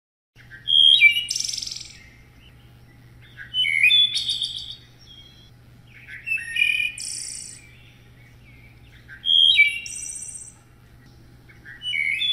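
Wood thrush singing: separate song phrases about every three seconds, each a few clear fluty notes followed by a high, rapid trill.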